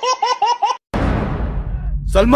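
A woman laughing: a quick run of short, even ha-ha notes that is cut off just under a second in. A rushing noise follows that fades, over a steady low rumble.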